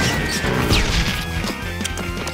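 Soundtrack music with cartoon sound effects laid over it: a crash right at the start, then a short falling whistle-like glide and a few sharp hits.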